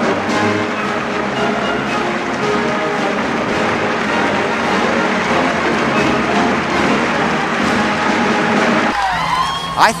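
A brass band playing, with many held notes. The music cuts off about nine seconds in, and a man starts speaking outdoors.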